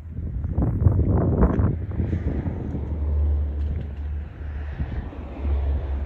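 Wind buffeting a phone's microphone: a low rumble, gusting louder in the first couple of seconds.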